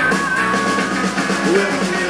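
Live rock band playing a sixties-style garage and rhythm-and-blues number, with drum kit and electric guitar.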